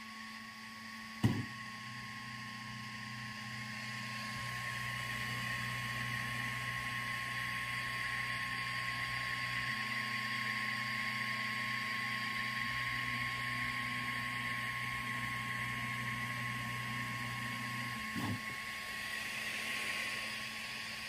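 iDraw 2.0 pen plotter with a laser module running an engraving job: the stepper motors and the laser's cooling fan give a steady hum, and the low tones change a few times as the head moves. There is a sharp click about a second in and a smaller one near the end.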